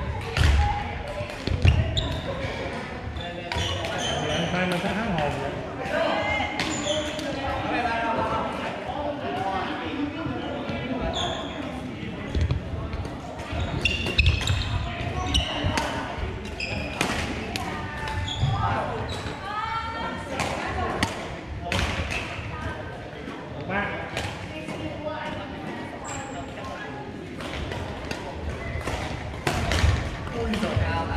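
Badminton rally sounds in a reverberant gym: repeated sharp hits of rackets on shuttlecocks and footfalls on the hardwood floor, over steady chatter of players' voices.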